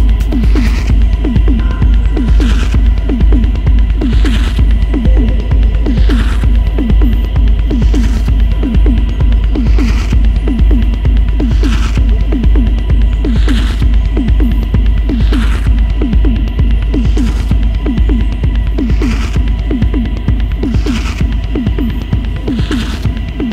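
Techno track in a continuous DJ mix: a heavy, steady sub-bass under a fast rolling bassline of short falling notes, with a bright hissing hit about every two seconds.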